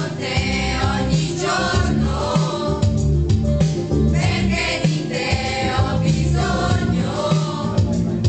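A group of women singing karaoke together into microphones over a loud backing track, in sung phrases with short breaks between them.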